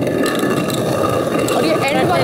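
Hand-turned stone quern (chakki) spun fast, its upper millstone grinding chana dal against the lower stone with a continuous rattling grind. Voices join near the end.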